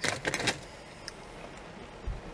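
Sweet packaging crinkling and crackling as a mint chocolate is taken from its pack: a quick run of sharp crackles in the first half second, then quiet.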